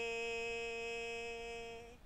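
A woman singing a Punjabi folk song unaccompanied, holding one long steady note that fades out just before the end.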